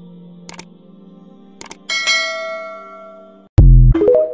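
End-screen sound effects over a soft background drone: two pairs of sharp clicks, then a bright bell-like chime about two seconds in that rings out slowly. Near the end a sudden, very loud deep boom opens the TikTok outro jingle.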